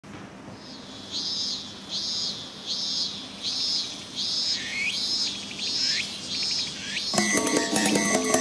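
A cicada singing in a regular string of about eight high notes, a little under a second apart, the later ones ending in a falling glide. About seven seconds in, loud electric-guitar rock music starts.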